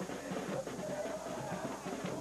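A crowd of football supporters singing the year's carnival hit over drums, with a long held note from about halfway through.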